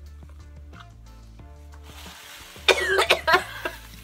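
Background music plays throughout. About two and a half seconds in, a person coughs and gags into a tissue on a foul-tasting jelly bean, in a few harsh bursts lasting about a second.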